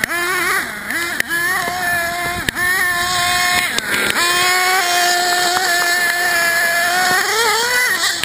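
Small nitro RC car engine running at high revs with a high whine, dipping sharply as the throttle is lifted a few times and climbing again near the end, with scattered clicks and knocks.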